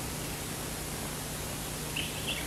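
Steady hiss with a faint low hum: the background noise of an old film soundtrack played over a hall's loudspeakers, in a gap between lines of dialogue.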